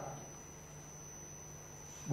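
Faint room tone in a pause between speech: a steady low hum with a thin, steady high-pitched tone.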